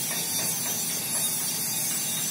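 A steady hiss with faint irregular scratchy ticks.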